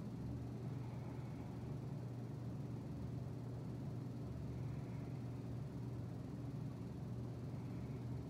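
Steady low mechanical hum with a soft hiss, unchanging throughout: the background drone of air-moving equipment such as running fans.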